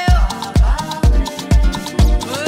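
Afro-Cuban-flavoured house music: a steady four-on-the-floor kick drum at about two beats a second under busy Latin percussion and a melodic line.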